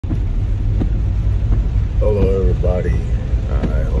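Steady low rumble inside a car cabin, with a few faint ticks. A man's voice starts talking about two seconds in.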